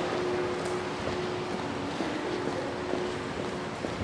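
Steady outdoor street ambience: an even rush of background noise with a faint steady hum underneath.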